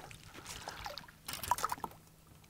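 Hooked smallmouth bass splashing at the water's surface beside the boat as it is landed by hand: faint trickling at first, then a quick run of splashes in the second half.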